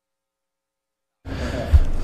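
Silence, then about a second in the meeting room's microphone feed cuts in abruptly: steady room noise with a low hum, a faint breath or murmur, and a single short knock near the end.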